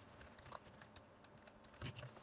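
Faint computer-keyboard typing: a scattered run of soft keystrokes, with a few slightly louder ones near the end.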